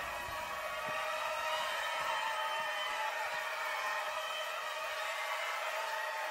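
A city bus in motion, heard from inside the cabin: a steady running noise with several level whining tones over road noise.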